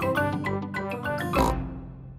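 Short cheerful cartoon closing jingle: a quick run of bright, sharply struck notes that fades away near the end. A cartoon pig's snort comes about one and a half seconds in.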